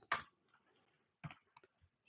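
Two faint computer-keyboard keystroke clicks about a second apart, with a fainter tick after the second.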